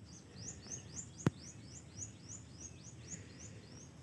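A small bird calling a fast run of high, repeated chirps, about four a second, that stops shortly before the end. A single sharp click a little over a second in is the loudest sound.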